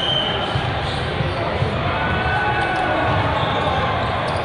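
Din of a large hall full of volleyball play: balls being struck and bouncing on several courts under a steady murmur of many voices. A referee's whistle sounds briefly at the very start, signalling the serve.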